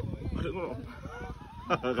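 Indistinct talking: low voices through most of it, then a louder voice starting near the end.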